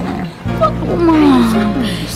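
Band music playing steadily, dropping out briefly just before half a second in, then coming back with a long, drawn-out voice falling in pitch over it.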